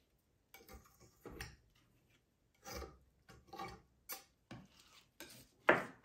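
Paper towel wiping wet acrylic paint off a canvas edge and hands shifting the canvas on a plastic-covered spin table: a handful of short, scattered rubbing and scraping strokes with quiet gaps between, the loudest just before the end.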